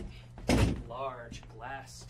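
A single sharp thump about half a second in, followed by a man's wordless vocal sound effects.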